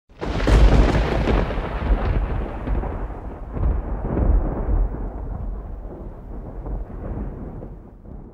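A long roll of thunder: it comes in sharply, is loudest in the first second, swells again around the middle, then slowly rumbles away.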